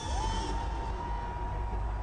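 Live arena concert music: a single held high tone that slides up at the start and then holds steady over deep, heavy bass.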